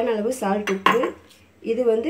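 Dishes and a spoon clinking as small bowls and a plate of spice powders are handled on a counter. There are sharp clinks right at the start and again a little under a second in, with a voice talking around them.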